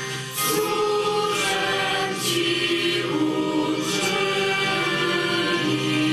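Choir singing a slow hymn in long held notes, the offertory hymn of a Catholic Mass.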